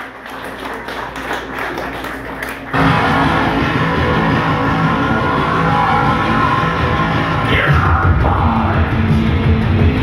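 Live rock band starting a song with electric guitar and keyboards. Crowd noise comes first, then about three seconds in the full band comes in suddenly and loud, and the low end gets heavier near the end.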